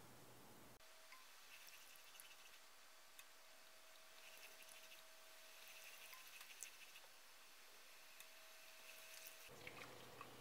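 Near silence, with faint scattered light clicks of a silicone spatula stirring sugar syrup in a pot.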